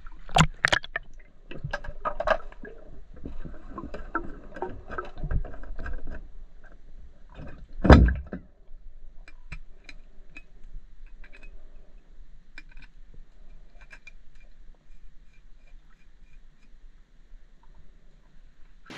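Muffled underwater pool sounds as a swimmer goes under: a stretch of dense clicking and water rumble, a single loud thump about eight seconds in, then quieter scattered ticks while he handles the bow and arrow on the bottom.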